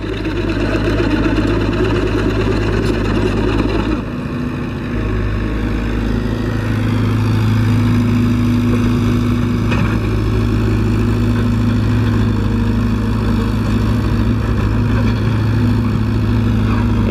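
Komatsu PC75UU mini excavator's diesel engine running steadily as the machine works, dipping briefly about four seconds in and then running louder and steadier from about six seconds on.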